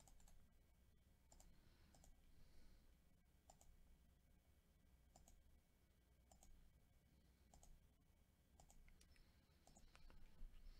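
Faint computer mouse clicks, about one every second or so, with near silence between them.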